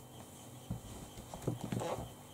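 A soft knock, then a short cluster of knocks and clatter as hard magnetic eyeshadow palettes are handled and set down on a table.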